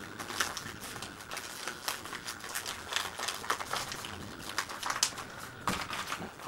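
Newspaper crinkling in irregular short crackles as it is folded over and pressed by hand, forming the rim of a paper seedling pot.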